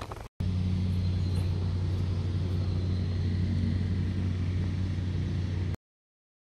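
A steady low mechanical hum at a constant pitch. It starts abruptly just after the beginning and cuts off abruptly shortly before the end.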